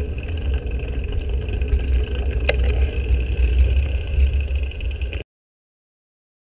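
Wind and road rumble on the microphone of a camera on a moving bicycle, heavy and steady, with one sharp click about two and a half seconds in. The sound cuts off suddenly about five seconds in.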